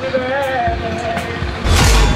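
A wavering vocal line, then, about a second and a half in, a loud swelling whoosh with a deep rumble: a soundtrack transition effect leading into a song.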